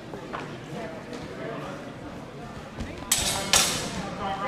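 Low murmur of voices in a large sports hall, then two short loud rushes of noise about half a second apart near the end.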